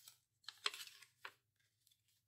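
Faint, brief rustles of a handmade journal's paper pages being turned by hand: a couple of short ones about half a second in and another a little past one second.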